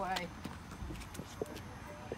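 A voice finishing a word, then low background noise with faint, brief snatches of other voices.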